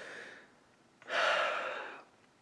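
A man's breathy exhale, a sigh that swells about a second in and fades, after the effort of pulling a knife edge through paracord.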